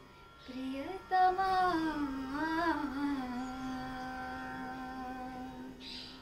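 Solo female voice singing a Kannada light-music (sugama sangeetha) song: a quick breath, an ornamented, gliding phrase, then one long held note that closes the song, fading near the end.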